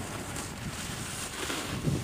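Wind buffeting the microphone outdoors: a steady low rumble with hiss and no distinct events.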